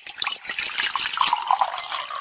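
Hot coffee poured in a stream into a ceramic mug, splashing steadily as it fills.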